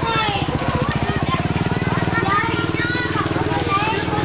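Children's high voices calling and shouting over a steady, fast-pulsing low engine drone.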